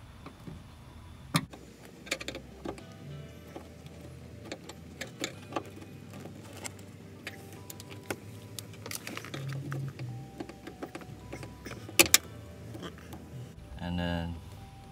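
Plastic door-harness clips and wiring being pried and handled inside a car door: scattered clicks and taps, with two sharp snaps close together about twelve seconds in. Faint background music plays underneath.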